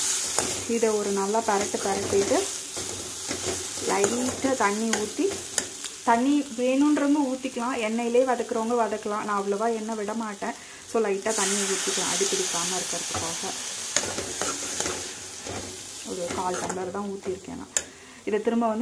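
Brinjal pieces frying in oil in a pan, sizzling, while a metal slotted spoon stirs and scrapes through them. A wavering pitched sound comes and goes over the sizzle.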